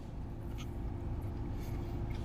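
Steady low rumble of a car cabin, with a couple of faint mouth clicks as a soft cookie is bitten and chewed.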